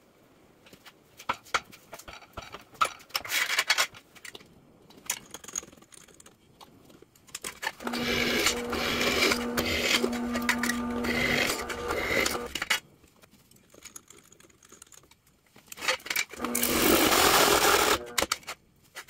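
A few sharp metal clanks and taps, then a bench drill press running and drilling into a small steel bracket for about four and a half seconds, its motor humming steadily under the cutting noise. A second, shorter burst of drilling comes near the end.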